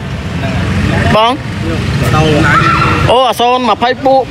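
Low rumble of passing street traffic, with men talking over it about a second in and again near the end.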